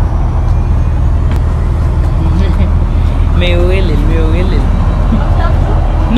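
Steady low rumble of a running motor. A high-pitched voice speaks briefly around the middle.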